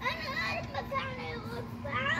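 A young child's voice talking and babbling, high-pitched and fairly faint, over a faint steady hum.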